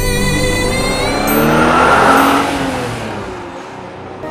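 A car driving past: its noise swells to a peak about two seconds in and then fades away, over background music that trails off.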